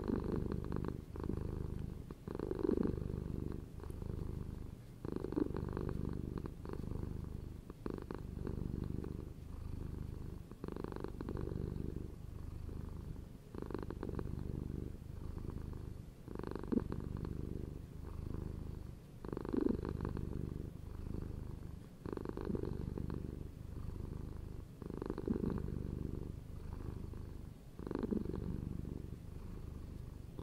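Mother cat purring steadily while nursing her newborn kittens, the purr swelling with each breath about every three seconds.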